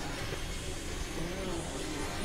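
Experimental synthesizer noise music: a dense, steady rumbling drone with wavering tones weaving over it.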